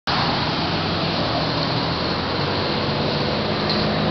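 Steady road traffic noise, an even continuous wash of sound with a faint low hum.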